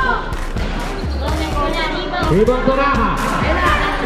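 A basketball bouncing on a concrete court among the voices and shouts of players and spectators.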